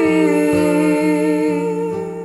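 Folk song: a long held vocal note that dips slightly in pitch at the start, over a steady low drone, with soft plucked strokes about twice a second.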